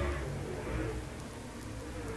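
Dirt late model race cars' engines running as the field circles the track, a steady rushing noise with a low hum beneath.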